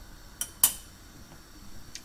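Metal spoon clinking twice as it is put down: a light click, then a louder sharp clink with a brief ring.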